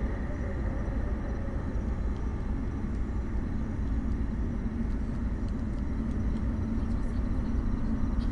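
Falcon 9 first stage's nine Merlin 1C engines at full power during ascent: a steady low rumble.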